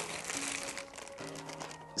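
Faint crinkling of the plastic bags wrapped around two water bottles as they are handled, over quiet background music with a few held notes.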